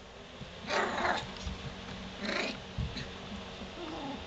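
A three-week-old golden retriever puppy crying out twice in short squeals: once about a second in and again, more briefly, about a second and a half later.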